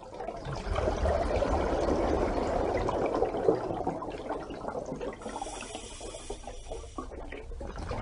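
Continuous rushing, trickling water, most of it low and churning, with a thin higher hiss added for a couple of seconds past the middle.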